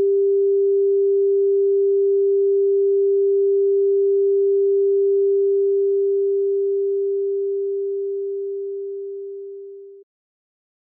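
A steady, pure 396 Hz sine tone, the 'solfeggio frequency', that fades out over the second half.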